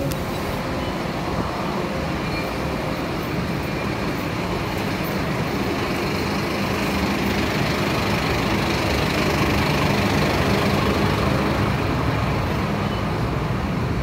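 SBS Transit bus engine running with a steady low hum, heard close by, growing slightly louder toward the middle, over general traffic noise.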